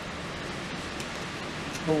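Steady background hiss with no distinct events, and a man starting to speak near the end.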